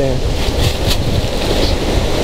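Wind buffeting the microphone of a handheld camera: a loud, steady, low rumbling roar.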